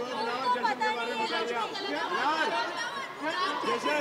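Several voices talking over one another at once: overlapping chatter of a group of people.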